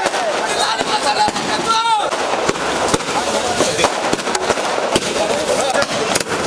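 A string of firecrackers crackling, with rapid, irregular pops throughout, over crowd voices.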